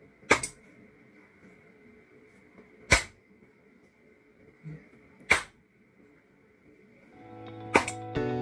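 Four sharp hand claps, roughly two and a half seconds apart, each loud enough to trip a sound sensor and switch a relay and desk lamp on or off. Background music fades in near the end.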